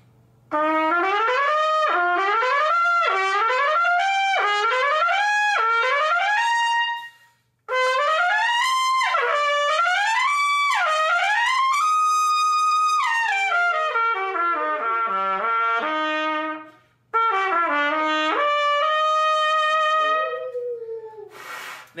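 Lotus Universal Bb trumpet, with a yellow brass bell stem and phosphor bronze flare, fitted with a phosphor bronze tuning slide and heavy valve caps, played open in three phrases of rising and falling scale runs, with one held high note near the middle.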